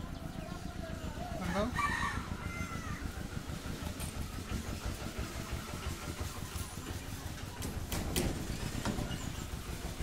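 A rooster crowing once, about one and a half seconds in, with a rising then falling call. Near the end come a few sharp knocks.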